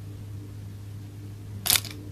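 A single short, sharp click near the end, over a steady low hum.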